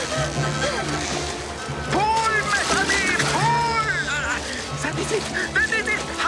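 Orchestral film score over cartoon water splashing, with characters' wordless excited cries rising and falling in pitch about two to four seconds in and again near the end.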